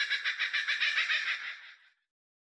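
A high, rapidly fluttering shimmer sound effect on the animated channel logo, fading out over about a second and a half after the intro jingle's last strike.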